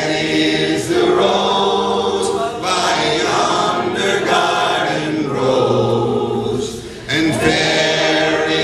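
Several voices singing together unaccompanied, in long held notes, with a short break about seven seconds in.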